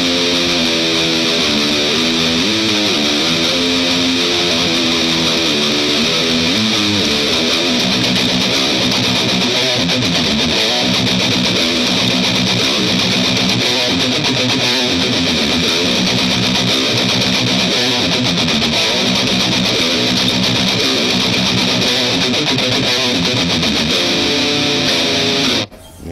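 Heavily distorted electric guitar riff played on a Fender Telecaster fitted with humbuckers. It begins as a shifting line of notes for the first several seconds, then settles into a repeated low riff, and cuts off abruptly just before the end.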